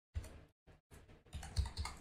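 Computer keyboard keystrokes: a single keystroke a moment in, then a quick run of several keystrokes in the second half.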